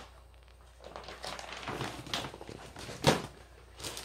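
Plastic snack bags rustling and being handled as they are put away, with a single sharp knock about three seconds in.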